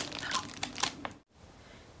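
Crinkling of a small wrapped sample packet of bladder pads being handled, a close rustle of many small clicks that cuts off abruptly a little over a second in.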